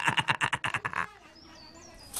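A cartoon fox character's rapid, pulsing voice, which stops about a second in. After it come a few faint, high bird chirps that rise and fall.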